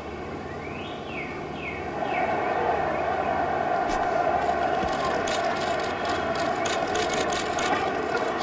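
Golf gallery crowd ambience: a steady murmur that grows louder about two seconds in, with a few chirps in the first two seconds and scattered sharp ticks in the second half as a putt rolls toward the hole.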